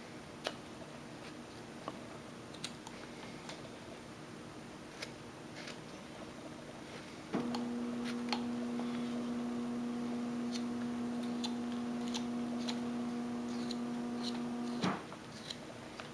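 Faint, scattered clicks of a hand carving knife slicing small chips from a wooden figure. About seven seconds in, a steady hum of unknown source starts abruptly, runs for about seven seconds, and cuts off suddenly about a second before the end.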